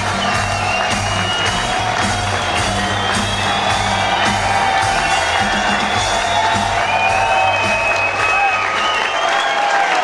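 Live rock band playing in a theatre, with the audience cheering and whooping over the music.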